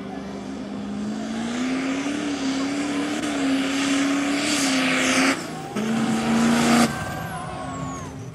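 Stroked 6.0 Powerstroke turbo-diesel V8 in a mega mud truck revving up and holding high revs under full throttle. The engine sound breaks off sharply a little over five seconds in, comes back for about a second, and drops away abruptly near seven seconds.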